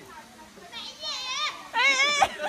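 High-pitched excited squealing from a child's voice, with a quick wavering pitch. There are two bursts, the second one louder and starting near the end.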